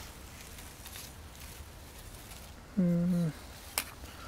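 A man's short, level-pitched hesitation sound, a held "eh", about three seconds in. It is the loudest thing here. Under it is faint rustling, and a sharp click comes near the end.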